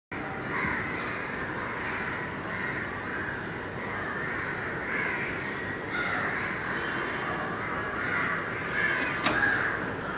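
House crows cawing repeatedly over a steady background hum of outdoor ambience, with a sharp click near the end.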